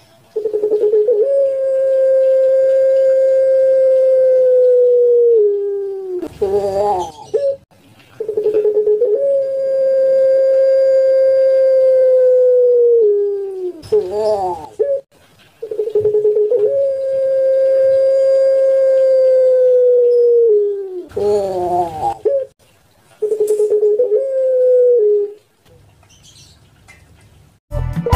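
Puter pelung, a ring-necked dove bred for its long coo, cooing: three long drawn-out coos of about five seconds each, held on one pitch and dropping at the end, each set off by short wavering notes, then a shorter fourth coo.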